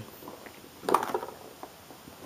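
Handling noise as an iPad is lifted out of its cardboard box: a short burst of scraping and tapping about a second in, with a few faint ticks around it.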